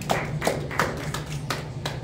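A few sharp hand claps at an even pace, about three a second.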